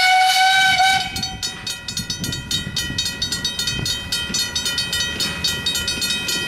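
Steam locomotive whistle: one blast lasting until about a second and a half in, rising slightly in pitch at its onset, over the steady rapid ringing of a level-crossing bell. After the whistle the locomotive's working and its train's rumble carry on beneath the bell as it approaches the crossing.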